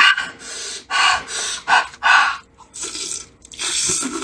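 Close-miked mouth sounds of eating a braised pork hock: about six short, noisy bursts of sucking at and biting into the meat, with breaths between.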